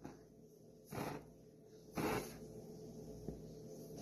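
Two faint, short puffs of breath about a second apart, a child blowing at a candle flame.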